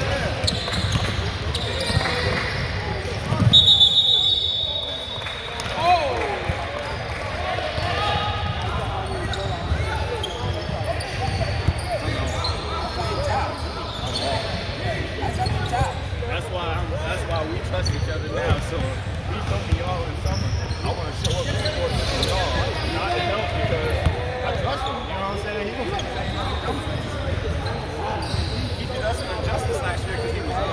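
Basketball game in a gym: a ball bouncing and sneakers on the hardwood court amid indistinct voices of players and spectators. A referee's whistle blast about three and a half seconds in is the loudest sound.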